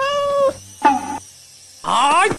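A cat meowing three times: a steady half-second meow, a shorter falling one about a second in, and a rising one near the end.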